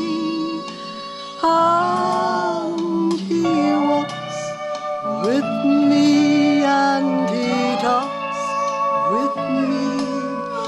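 A woman singing a slow gospel hymn, holding long notes with vibrato, over instrumental accompaniment.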